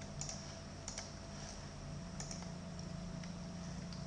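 A few faint, scattered clicks of computer keys over a steady low electrical hum.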